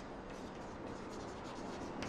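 Chalk writing on a chalkboard: faint scratching strokes and light taps as a short word is written.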